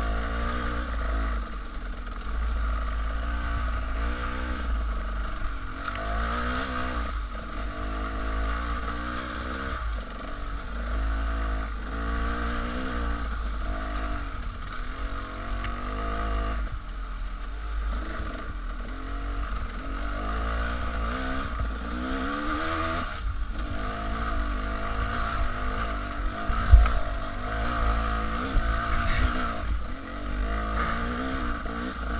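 Dirt bike engine pulling along a rough singletrack, its pitch rising and falling again and again as the throttle is worked on and off, over a constant low rumble. A single sharp knock stands out near the end.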